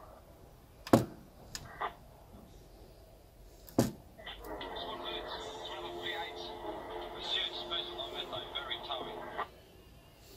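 Clicks of the push-buttons on a replica Mad Max RVS police radio, one sharp click about a second in and another near four seconds. Then a recorded radio-transmission voice clip plays from the unit's small speaker until just before the end.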